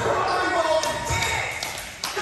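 A basketball bouncing on a hardwood gym floor, with players' voices and calls ringing around the gym.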